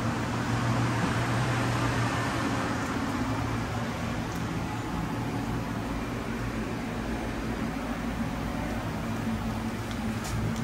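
Steady machine hum: fan noise over a low, even electrical drone, with no change in pitch or level.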